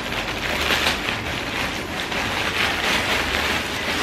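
Plastic poly mailer bag crinkling and rustling continuously as it is pulled open and handled, with many small crackles.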